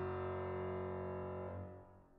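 A piano's last chord, many notes held together, ringing and slowly dying away, then fading out near the end.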